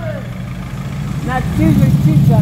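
Car engine running at low revs close by, growing louder about one and a half seconds in as the car comes alongside.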